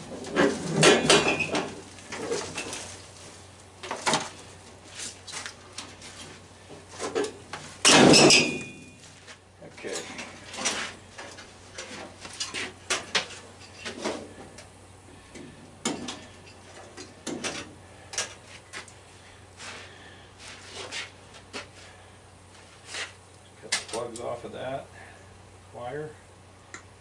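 Sheet-metal clanks, knocks and rattles of a stripped furnace cabinet being handled and turned over and its wiring worked on, with the loudest bang, ringing briefly, about eight seconds in.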